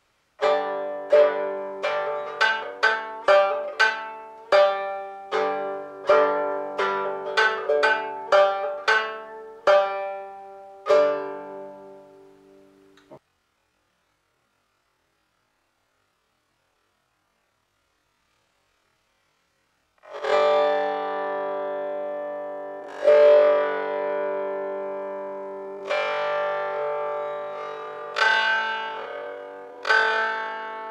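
Shanz (shudraga), the Mongolian three-string plucked lute, playing a quick phrase of plucked notes, about two or three a second, that fades and stops abruptly about 13 seconds in. After about seven seconds of silence the phrase returns slowed down, its notes drawn out and ringing.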